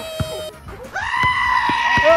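A person's high-pitched scream: a shorter cry that ends about half a second in, then a long, steady, bleat-like shriek that starts about a second in and is still held at the end.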